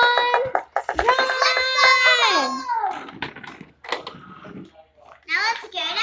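A child's voice in long, drawn-out calls held at one pitch, the longest lasting nearly two seconds, then softer scattered sounds and a brief vocal near the end.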